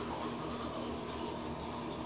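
A steady, even hum with hiss and no speech.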